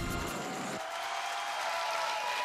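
Background music cutting out about a second in, leaving an even hiss of studio audience applause.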